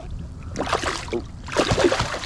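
Water splashing and churning as a hooked snook thrashes at the surface beside a kayak, in two rushes, one about half a second in and a stronger one near the end.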